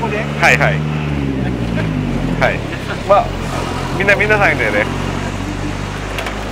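A motor vehicle engine running with a low steady hum, its pitch rising and falling slightly in the first two seconds, under short bursts of voices.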